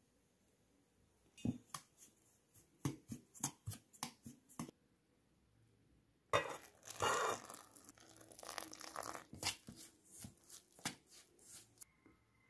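A metal spoon clinking and scraping against a steel bowl of rice flour while ghee is worked in: a run of sharp clicks, a pause, then a denser rush of scraping about six seconds in followed by more clicks.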